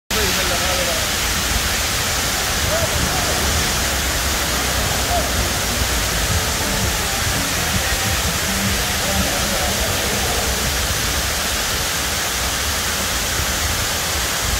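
Waterfall: a steady, unbroken rush of falling water, with faint voices now and then beneath it.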